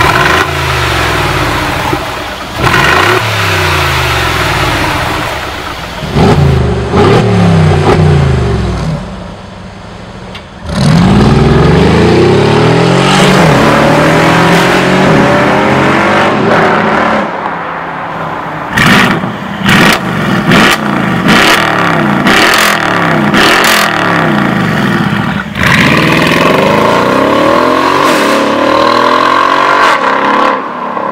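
BRABUS valve-controlled exhaust on Mercedes G-Class V8s in loud mode: the engine is revved in repeated rising sweeps, then pulls hard with its pitch climbing and dropping through the gear changes. Around the middle of the run a string of sharp exhaust cracks and pops sounds out over the engine note.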